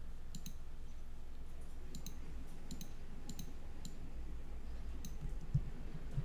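Computer mouse clicking about a dozen times, several of them quick double-clicks, while words in a document are selected and struck through. A faint steady low hum sits underneath.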